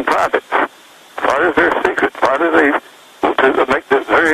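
Only speech: a man talking over a telephone line in three short runs of words, the voice thin and cut off at the top.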